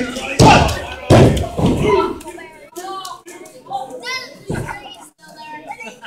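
Two heavy thuds on a wrestling ring's canvas mat, about two thirds of a second apart near the start, then a third thud a little past the middle, amid crowd voices including children shouting.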